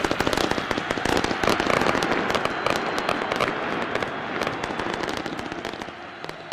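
Fireworks and firecrackers going off in a rapid, dense string of sharp cracks, thinning and growing quieter toward the end.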